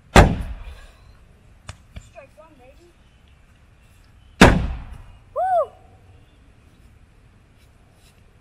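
Thrown tennis balls striking something hard: two sharp knocks about four seconds apart, each ringing out briefly.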